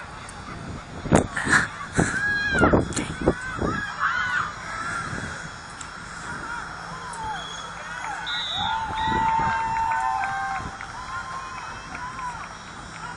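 Distant voices of players and spectators shouting and calling across an open sports field, with a few sharp knocks in the first three seconds.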